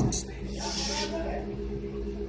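Faint, indistinct voice with a hissy burst about half a second in, over a steady low hum.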